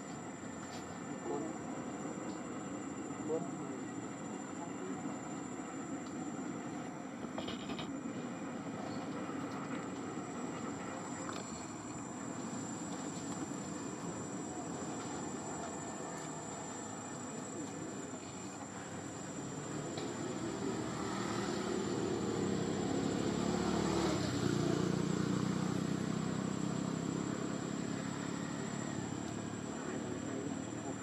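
Outdoor ambience: indistinct distant voices, a steady high insect whine, and a motor vehicle passing, its engine growing louder from about two-thirds through and then fading.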